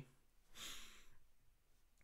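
A man's single audible breath, a soft breathy hiss lasting under a second, about half a second in, in an otherwise near-silent pause.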